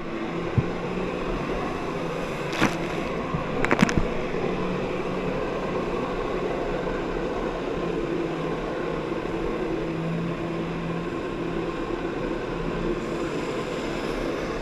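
Personal watercraft engine running steadily at high revs, driving its jet pump to push water up the hose to a flyboard, with water rushing around the hull. A few sharp knocks come in the first four seconds.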